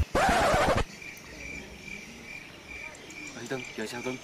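A loud burst of rushing noise in the first second, then a small insect chirping steadily, a short high note repeating about three times a second.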